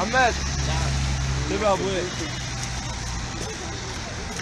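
Street traffic noise with a motor vehicle's steady low engine hum that fades out about three seconds in. A person's voice calls out twice, near the start and about halfway through, louder than the traffic.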